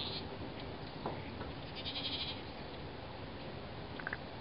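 Goats bleating: a brief call right at the start and a longer, quavering call about two seconds in, over a steady background hiss.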